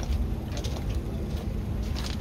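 Low, steady rumble of wind on the microphone, with a few footsteps crunching on gravel about every half second.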